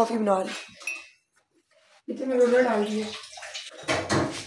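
A voice in two short stretches: one right at the start and a drawn-out one of about a second near the middle, with a second of quiet between them.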